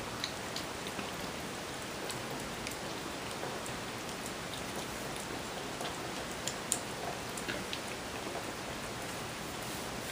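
Several kittens eating from one shared plate: scattered small wet clicks and smacks of chewing and lapping over a steady background hiss.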